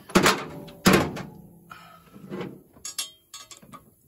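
Two dull thunks about a second apart, then a few light metallic clicks near the end, from hands and a socket wrench working on the header bolts of chrome shorty headers.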